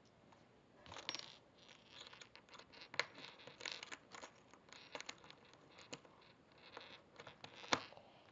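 A small new padlock being worked off by hand: faint, irregular light clicks and scratchy rustling, with a few sharper clicks, the loudest near the end.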